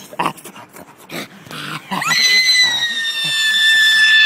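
A few short, rough animal-like growls from a masked prankster. About halfway through, a woman breaks into one long, high-pitched scream that holds and slowly sinks in pitch.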